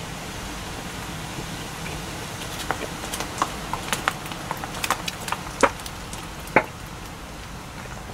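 Close-miked mouth sounds of a person chewing grilled chicken with the mouth closed: scattered small wet clicks and smacks, a couple of them louder, over a steady hiss.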